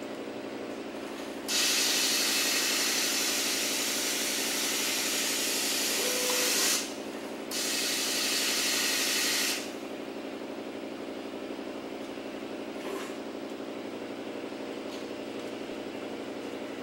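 Powder pouring from a Rotary Scalpel metering feeder's spout into a plastic cup, filling it by weight. A loud hiss starts about a second and a half in, breaks off briefly near seven seconds, then resumes and stops near ten seconds. A steady machine hum with several tones runs underneath.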